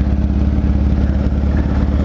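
Motorcycle engine idling steadily with a low, even note.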